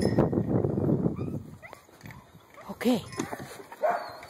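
A dog making rough, noisy sounds for about the first second, then a short quiet before a woman's 'Okay'.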